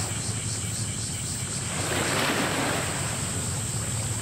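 Outdoor waterfront ambience: a steady low hum under a steady high-pitched whine, with a rush of wind noise on the microphone swelling about halfway through.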